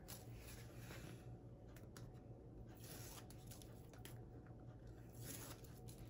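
Near silence: room tone with a low hum and a few faint ticks of paper being handled.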